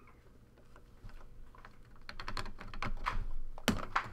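A quick run of light clicks and taps from trading cards and cardboard card boxes being handled on a table, growing denser and louder toward the end.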